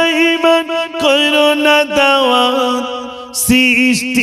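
A man's voice chanting a Bengali waz, a religious sermon, in a sung, melodic style. He holds long wavering notes, pauses briefly about three seconds in, then starts a new phrase.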